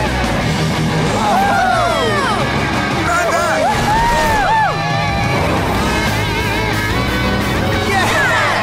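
Cartoon racing-scene soundtrack: upbeat music over animated monster-truck engine and race sound effects, with swooping calls or shouts that rise and fall in pitch.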